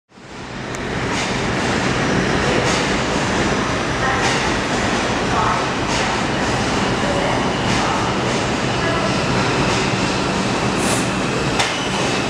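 Subway train running, a steady noisy rumble of wheels on rails that fades in over the first second, with a few scattered clicks over it.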